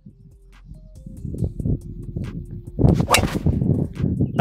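A driver clubhead striking a golf ball on a full swing: one sharp, loud crack about three seconds in, over a low rumble.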